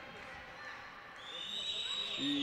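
Faint background noise of a volleyball hall during a match, with a steady high-pitched tone that begins a little past halfway and holds on.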